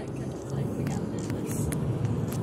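Steady low road rumble of a car driving along, heard from inside the cabin, with a few faint ticks and hisses over it.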